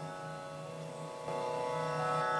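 Steady drone of a Carnatic music accompaniment holding the tonic, with a stronger sustained note joining a little past the middle and the sound getting slightly louder.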